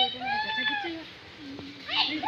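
A parrot in the aviary gives one drawn-out, meow-like call that arches up and falls away, under faint background voices.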